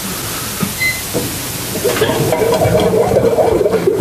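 Emery Thompson 12NW batch freezer running, a steady rushing hiss. A lower, wavering sound joins in about halfway.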